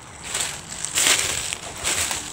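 Footsteps crunching through dry fallen leaves on a wooded slope, two louder crunches about a second apart.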